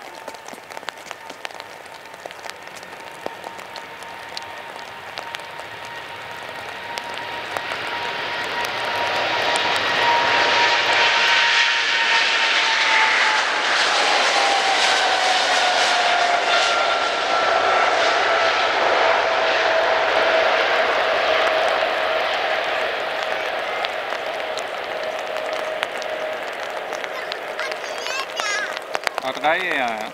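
Boeing 777 twin-engine airliner at full takeoff power on a wet runway, growing louder as it rolls closer and then dropping in pitch as it passes, with a steady whine that slides down. Its engines roar over the hiss of spray thrown up from the flooded runway.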